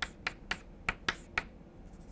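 Chalk clicking against a blackboard while writing: about six short, sharp clicks spread through two seconds.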